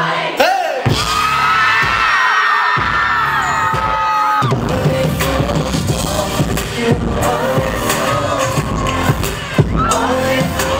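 Live pop band music heard from within the audience: a held, slowly bending high line with little bass for about four seconds, then the drums and bass come in and the full band plays on.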